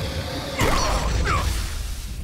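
Cartoon sound effects of a giant fog monster lunging: a deep rumbling rush that swells about half a second in, with creaking, gliding squeals over it.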